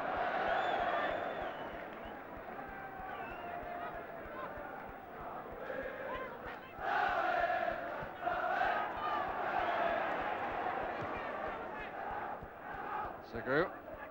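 Football crowd chanting and singing from the terraces, a mass of voices that swells about seven seconds in.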